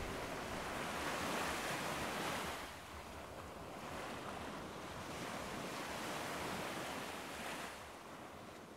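Small waves washing onto a sandy beach: a steady rush of surf that swells and eases every few seconds and tapers off near the end.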